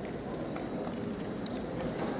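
Quiet hall ambience: a low murmur of voices with a few light knocks and taps, without music playing.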